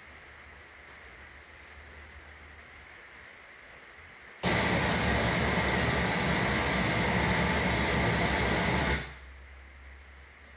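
Propane forge burners running with a steady rushing hiss. It comes on suddenly about four and a half seconds in and cuts off about four and a half seconds later, over a faint low hum.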